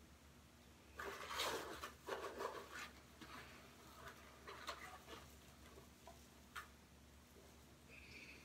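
Faint rustling of packaging as a hand rummages in a cardboard box, loudest for about two seconds starting a second in, followed by a few light clicks and taps of things being handled.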